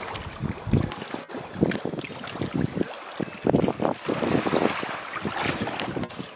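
Water splashing and sloshing in irregular surges as a hippopotamus shoves a floating object around its pool with its snout.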